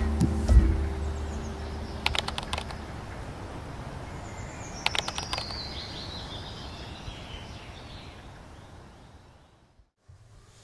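Title-sequence sound effects over the fading tail of intro music: short groups of quick keyboard-like clicks, a falling swoosh around the middle, then a fade to near silence near the end.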